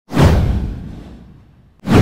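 Whoosh sound effects from an intro logo animation: one sweeps in with a deep low rumble and fades away over about a second and a half, and a second whoosh rises sharply near the end.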